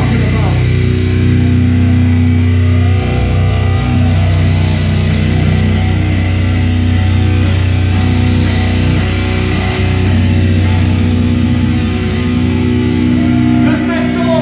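Death metal band playing live through a PA, loud: distorted electric guitars and bass hold long, sustained low chords that ring for several seconds at a time.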